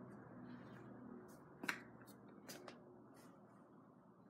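Near silence, with a handful of small sharp clicks, the sharpest about one and a half seconds in, and a faint low hum that fades out in the first half.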